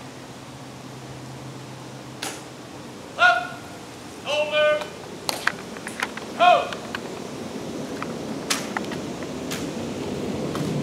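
A soldier calling out drawn-out ceremonial commands: three loud, long calls, the last falling in pitch at its end. Sharp clicks come between and after the calls.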